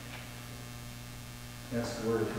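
Steady low electrical mains hum, with a man's voice starting again near the end.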